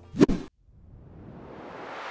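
A brief pop near the start, then after a moment of silence a rising whoosh: a swelling noise sweep that climbs in pitch and grows louder, a transition sound effect leading into the channel's intro.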